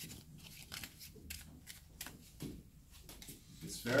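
A deck of playing cards being mixed by hand: a quiet, irregular run of soft card flicks and rustles as the cards slide over one another.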